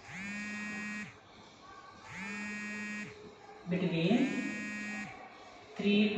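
Three long, steady beeps of one pitch, each about a second long and about two seconds apart, from an electronic buzzer-like device.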